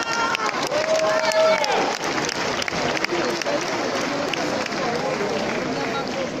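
Concert audience applauding steadily, with voices in the crowd close by and one voice held for about a second near the start.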